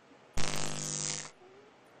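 A comic electric-buzz sound effect, about a second long: a sharp click, then a steady low buzz with hiss that cuts off abruptly. It stands for an electric jolt from the necklace.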